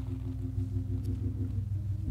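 A church keyboard organ holding a low, steady chord.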